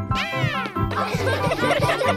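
Cartoon background music for children, with a short sound effect that falls in pitch during the first second.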